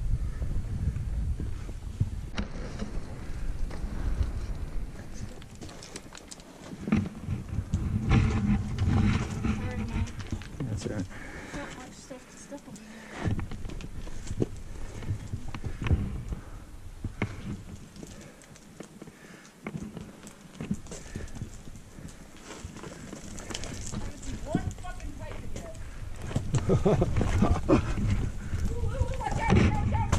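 Boots and hands scrambling over loose talus rock: irregular clinks and knocks of stones shifting underfoot, over a low rumble of wind on the microphone. Voices come in near the end.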